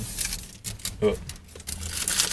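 Paper wrapper rustling and tearing as it is stripped off a drinking straw by hand: a quick run of small clicks and rustles.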